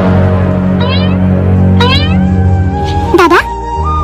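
Background music with steady low sustained notes, two short rising sweep sound effects about one and two seconds in, then a voice saying "dada" near the end.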